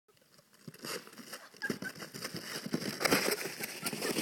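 Plastic sled sliding and scraping down crusty snow, a dense run of irregular crunching and crackling that grows louder as it comes closer, loudest about three seconds in.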